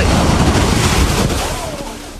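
Tsunami-driven ocean surge crashing over a seawall and washing across the pavement, with wind buffeting the microphone. The loud rush of water eases off near the end.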